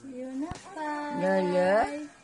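A baby vocalizing: a short coo, then a longer drawn-out cooing sound that rises in pitch at the end.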